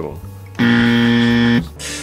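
A quiz-show buzzer sound effect: one loud, steady, low electronic buzz lasting about a second, starting and stopping abruptly.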